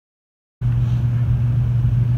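About half a second of dead silence, then a steady, loud low hum with rumble underneath starts abruptly and holds unchanged.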